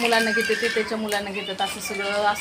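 Speech: a woman talking, some syllables drawn out.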